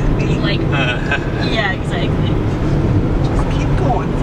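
Inside the cabin of a Hyundai Accent, a steady low drone of engine and road noise as the small car climbs a steep mountain grade under load. Voices talk over it for the first couple of seconds.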